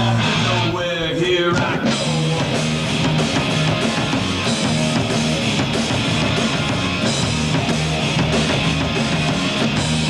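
Hard rock music with distorted electric guitar: a short rising guitar glide, then the full band with drums comes in about two seconds in and plays on at a steady driving pace.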